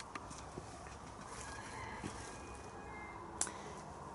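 Quiet outdoor background with a few faint, short bird calls, and a sharp click about three and a half seconds in.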